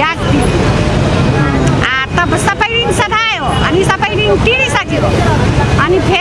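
A woman talking in Nepali, with a steady low rumble of street noise behind her voice.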